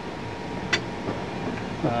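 Steady hum of ventilation and machinery inside a submarine compartment, with a single sharp click about three quarters of a second in.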